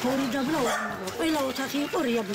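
Speech only: a woman talking, her voice rising and falling.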